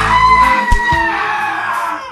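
Film score music: a loud held high note, starting abruptly and sagging slightly in pitch over about two seconds, over a low bass.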